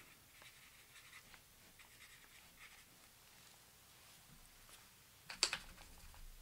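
Faint, soft strokes of a water-brush pen dabbing watercolour onto a paper card. A single sharp knock comes near the end.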